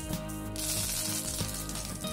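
Fresh curry leaves dropped into hot tempering oil with mustard seeds, urad dal and dried red chillies, bursting into a loud sizzle about half a second in and sizzling on steadily.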